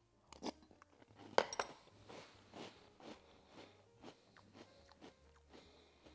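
Faint crunching of Magic Spoon Honey Nut protein cereal in milk being chewed, a mouthful of crispy pieces. One clearer crunch comes about a second and a half in, then softer scattered crunches.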